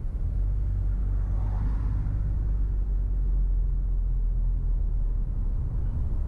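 Steady low rumble of a car being driven along a street: engine and road noise, with a faint swell about a second and a half in.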